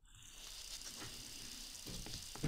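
Faint, steady background hiss of room noise picked up by the microphone, fading in at the start, with a soft tick shortly before the end.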